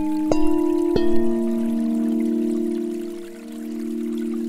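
Relaxing music of singing-bowl tones: two new strikes in the first second each bring in a fresh set of pitches, and the low tones then ring on steadily with a slow waver.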